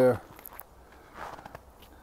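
A few faint footsteps on a thin layer of snow over a woodland path.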